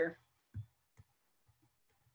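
Faint clicking at a computer: three soft clicks about half a second apart, the first a little louder.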